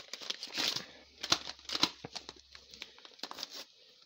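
A paper packet of dry onion soup mix being torn open and crinkled by hand: an irregular string of short crackles and rustles, in clusters with brief pauses.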